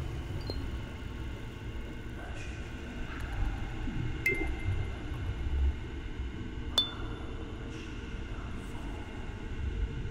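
Sparse electronic soundscape for a dance piece: a low rumbling bed with faint held tones, broken by two sharp pings that ring briefly at a high pitch, about four seconds in and again near seven seconds.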